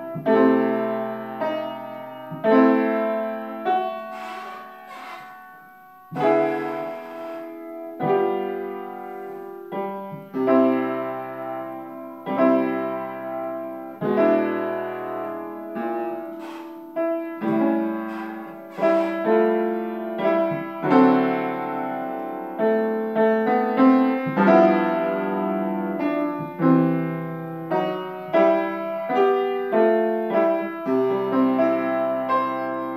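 Upright piano played solo: a slow piece, with chords and melody notes struck every second or two and left to ring out.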